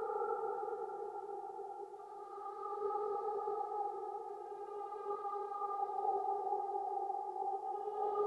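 Hologram Microcosm effects pedal in its Mosaic micro-loop mode, turning the looped voice into a steady, droning chord of held tones. Fainter high overtones join from about five seconds in.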